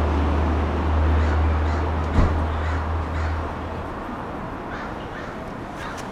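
A low steady rumble of outdoor traffic that fades out about halfway through, with a single light knock about two seconds in and a few faint short bird calls.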